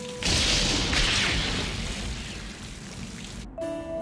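Heavy rainstorm sound effect: a loud, steady rain hiss over a low rumble. It swells in suddenly about a quarter second in and cuts off just before the end.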